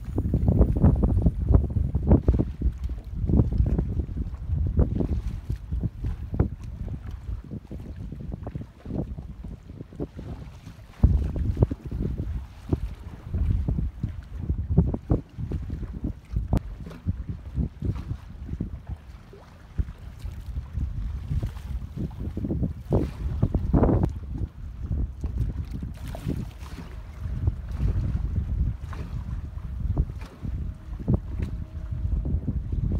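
Wind buffeting the microphone in gusts, a low rumble that swells and fades unevenly, strongest in the first couple of seconds and again about eleven seconds in.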